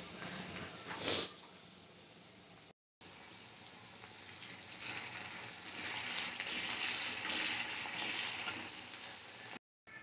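Chopped onions frying in hot oil in an iron kadai while a spatula stirs them: a steady sizzle that grows louder for the last few seconds.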